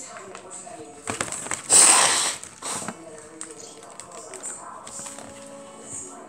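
Clear plastic packaging crinkling as it is handled, with one loud rustle about two seconds in and a shorter one just after, under faint voices.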